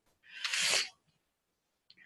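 A woman's short, breathy rush of air lasting about half a second, starting a quarter of a second in.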